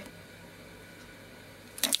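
Quiet room tone with a faint steady low hum; a brief burst of sound near the end as speech starts again.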